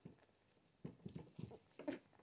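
A quick run of soft, low knocks and taps, about five in under a second, then a louder knock just before the end.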